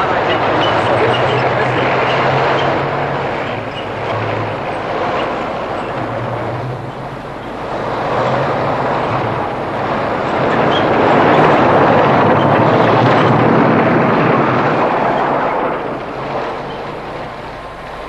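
Armoured military vehicle driving by, its engine running with the clatter and rumble of its tracks. It swells louder toward the middle and fades a little near the end.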